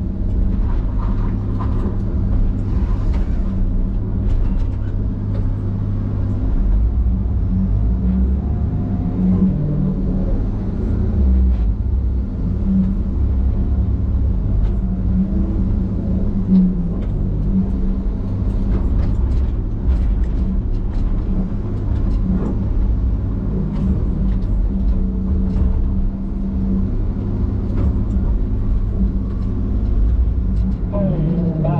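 A John Deere knuckleboom log loader's diesel engine and hydraulics, heard from inside the cab, running under steady load as the grapple swings pine logs onto a log truck. Scattered knocks and clicks from the logs and the boom sound over the engine's low, steady hum.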